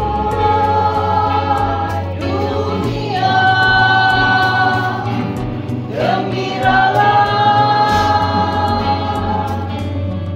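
A group of women singing a Christian song together in long held notes, over amplified instrumental backing with a steady bass line.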